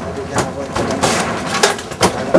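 Indistinct voices, with a few short, sharp knocks.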